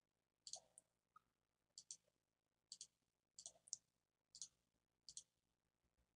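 Faint computer mouse clicks, about seven in all, most of them a quick double tick of button press and release, spaced about a second apart.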